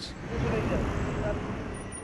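Street traffic noise of cars on a road, with faint voices in the background, fading out near the end.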